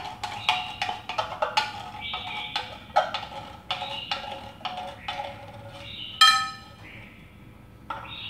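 Chopsticks knocking and scraping against the rim of a tin can of condensed milk as it is emptied into a glass bowl: a run of short ringing knocks, about two a second, with one brighter clink a little after six seconds.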